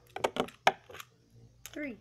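Plastic Beyblade tops and launcher: a quick run of sharp plastic clicks and rattles in the first second, then a voice starts near the end.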